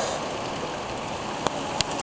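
Steady background hiss, even and without pitch, with two short clicks near the end.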